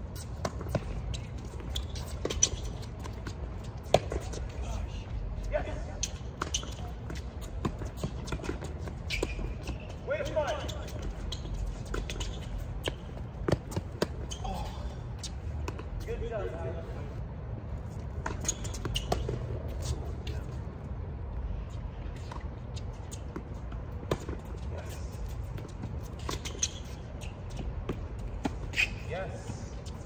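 Tennis balls struck by rackets and bouncing on a hard court during doubles rallies: short sharp pops at irregular intervals over a steady low rumble, with brief faint voices now and then.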